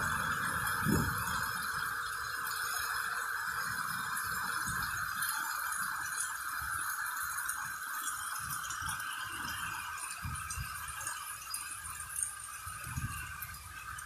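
Heavy storm rain pouring steadily, with gusts of strong wind buffeting the microphone in irregular low rumbles.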